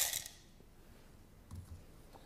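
Coffee beans pouring into the clear plastic hopper of a Cuisinart Supreme Grind burr grinder, their rattle dying away within the first moment. After that it is quiet apart from a faint soft knock about one and a half seconds in.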